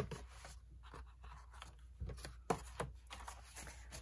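Paper cards and sheets being handled and set down on a paper trimmer, with a sharp click at the start and a few light taps and scrapes a couple of seconds in.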